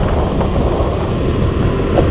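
Yamaha Mio M3 automatic scooter riding along at steady road speed, its engine and road noise mixed with wind buffeting the rider's microphone.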